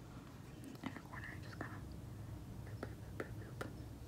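A faint whisper, then three light clicks about half a second apart near the end.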